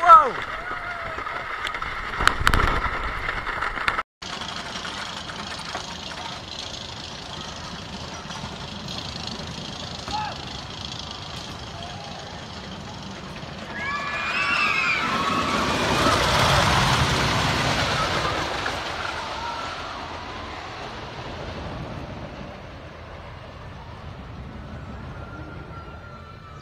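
Megafobia, a CCI wooden roller coaster: the first few seconds are on-board ride noise, cut off abruptly about four seconds in. Then the train is heard from the ground, rumbling along the wooden track and rising to its loudest about halfway through with riders screaming, before fading away.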